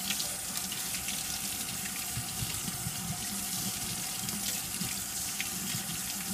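Kitchen faucet running into a sink, the stream splashing over an onion's roots as hands rub rock wool off them under the water.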